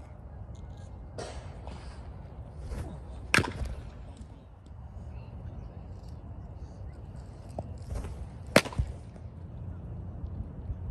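Two sharp impact cracks from pitched baseballs reaching the plate, about five seconds apart, the second the louder, over open-air background noise.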